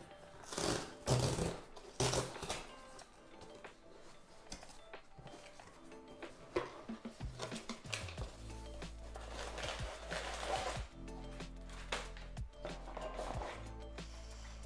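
Cardboard box being torn open and its flaps pulled back, with rustling packing paper, over background music. The loudest tearing comes about one and two seconds in; a longer rustle of paper follows around ten seconds in.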